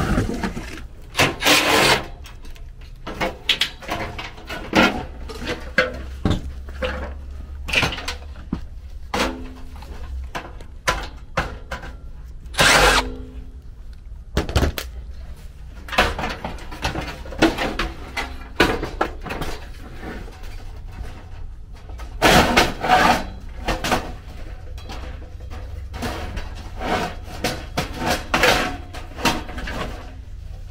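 Irregular knocks, clatters, rustles and scrapes of handwork: a cardboard box and a new metal blower wheel being handled, then work at the air handler's sheet-metal cabinet, with one short squeaky scrape near the middle, over a steady low hum.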